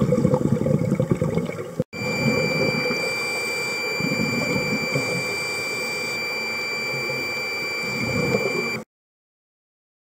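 Underwater sound picked up by a camera in its housing: choppy rushing, bubbling water noise. After a sudden cut about two seconds in, a steadier water rush continues with a faint high-pitched whine over it, then stops dead near the end.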